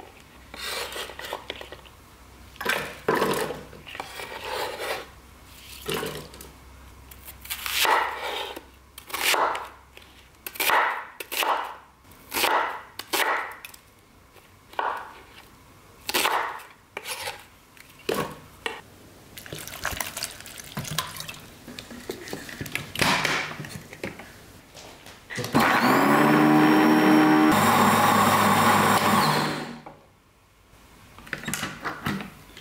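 Chef's knife chopping red chili peppers and then an onion on a wooden cutting board, in separate strokes at an uneven pace. Near the end an electric blender starts up with a rising whine and runs loud and steady for about four seconds, grinding the onion and chilies, then stops.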